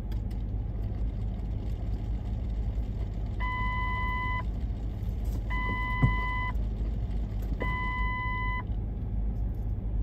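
Manhattan street traffic rumbling steadily. Three long electronic beeps of one steady pitch sound over it, each lasting about a second, spaced about two seconds apart in the middle of the stretch.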